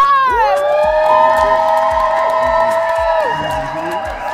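Hosts cheering a guest's entrance with a long, held shout of about three seconds, over music with a steady thumping beat.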